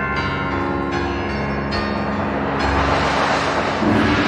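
Contemporary chamber music for two amplified pianos and percussion: bell-like struck chords ringing into one another, a noisy metallic swell building from a little past halfway, and a deep gong stroke near the end.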